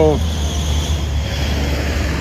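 Steady low rumble of city background noise, with cars on the road nearby and no distinct event. A man's spoken word ends right at the start.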